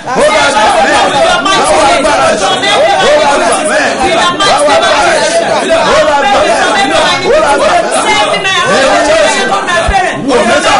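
Several voices praying aloud at once, overlapping without a break.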